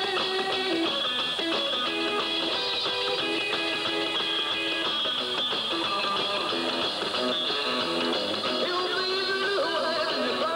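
A rock'n'roll band playing live, with guitar over an upright double bass and no vocals in this stretch.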